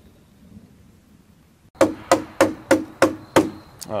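After a quiet stretch, a quick run of about seven sharp knocks, roughly three a second.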